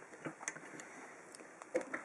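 A few faint, sharp clicks of a metal padlock being handled and seated in the jaws of a small vise.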